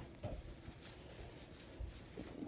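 Quiet room with faint fabric rustling as a shirt collar is straightened by hand, and two soft low thumps: one just after the start, one near the end.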